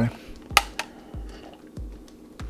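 A thick chocolate drink is sipped from a steel canteen cup, with a sharp click about half a second in and a smaller one just after. Under it runs background music with a soft, steady low beat.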